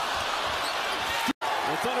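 Broadcast basketball-game sound: arena crowd noise with a few faint ball bounces. About a second and a half in, the sound cuts out completely for a moment at an edit, then commentary resumes.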